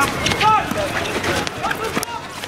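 Short shouted calls from players and spectators at a field hockey pitch, with a few sharp clacks in the first half second.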